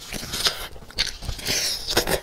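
Biting into and chewing a sauce-coated chicken leg close to the microphone: a string of short, irregular bites and mouth sounds with soft crunches.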